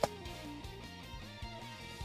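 Quiet background music with a guitar and a steady low beat, with a single sharp click right at the start.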